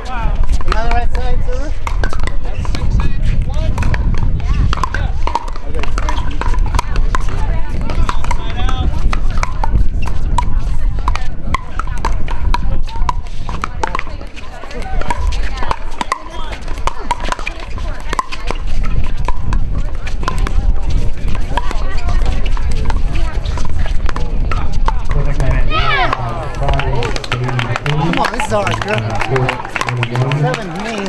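Indistinct voices of players and onlookers over a steady low rumble, with short sharp pops of pickleball paddles hitting the plastic ball during a rally.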